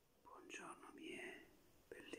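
A man whispering softly, close to the microphone.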